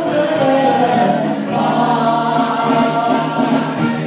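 Several voices singing together into microphones over a PA, holding long notes, backed by a live band with drums.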